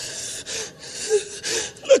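A man weeping at a microphone, drawing several gasping, sobbing breaths, then his voice breaks back in near the end.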